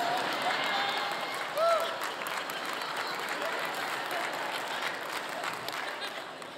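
A large congregation applauding and laughing in a big auditorium, a steady wash of clapping with a few individual voices calling out about two seconds in.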